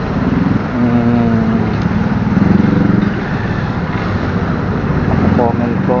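Motorcycle engine running in city traffic, with other motorcycles and vehicles around. A voice speaks briefly near the end.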